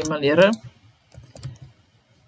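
A few keystrokes on a computer keyboard: scattered, faint clicks over the last second and a half, as text is typed into a document.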